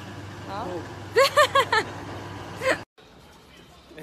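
A woman laughing in four quick, loud bursts over a steady low hum. The sound cuts off suddenly about three seconds in, and a quieter background follows.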